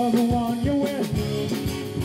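Live rock band with electric guitars, bass and drum kit playing held notes over drum hits, getting gradually quieter.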